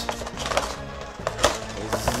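A plastic blister tray being slid out of a cardboard toy box: rustling and scraping with a few sharp clicks and cracks, the loudest about one and a half seconds in, over quiet background music.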